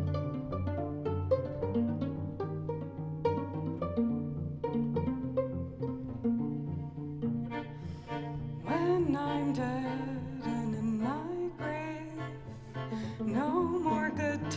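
String quartet playing with no voice: for the first eight seconds or so, short plucked pizzicato notes on cello and the other strings make a steady, walking accompaniment. About nine seconds in, sustained bowed lines with vibrato and sliding pitch come in over the plucked cello bass.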